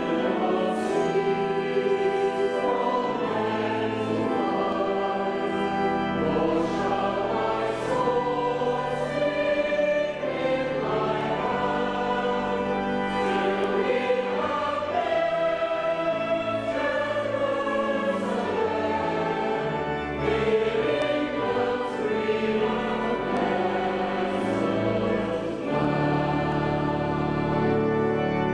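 Choir and congregation singing a hymn in a reverberant church, accompanied by the church organ with sustained low bass notes.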